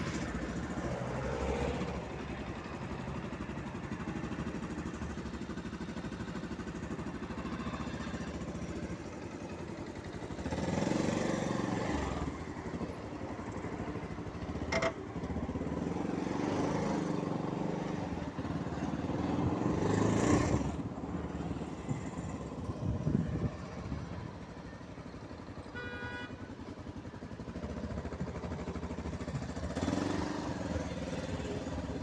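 Motorcycle engine running while riding slowly through traffic, with cars passing close by. It swells louder about ten and again about twenty seconds in, and there is a brief high tone about halfway through.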